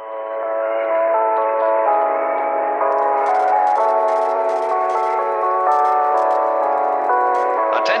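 A finished mallsoft (vaporwave) track playing: muffled, reverberant chords that change about once a second, with no low bass, and faint short ticks coming in about three seconds in. Just before the end, a sampled store PA announcement ("Attention shoppers") starts over the music.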